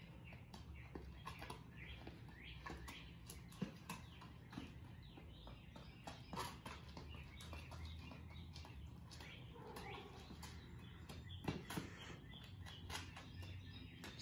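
Quiet outdoor ambience with scattered faint bird chirps and light, irregular taps of sneakers on a concrete driveway.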